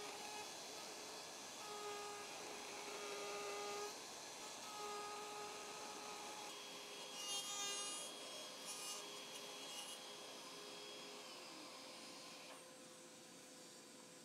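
Plunge router with a guide bush cutting a circular recess into a plywood block, its motor holding a steady whine that comes and goes as the bit bites the wood; it winds down and stops near the end.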